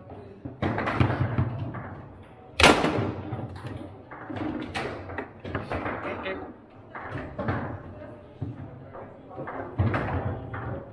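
Foosball table in play: the ball clacking off the plastic players and the table walls and rods knocking, in quick irregular bursts, with one loud hard knock about two and a half seconds in.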